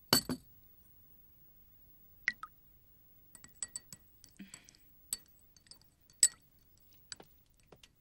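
A teaspoon clinking against a china teacup as it stirs, among light taps of breakfast tableware. The clinks are sharp and separate, with the loudest right at the start and another a little after six seconds.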